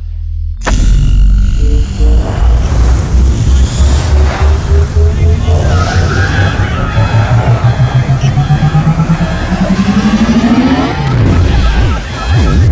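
Film sound design for a time machine starting up: a sudden loud onset about a second in, then a heavy throbbing pulse that speeds up steadily while a tone climbs in pitch, building toward the end, mixed with score.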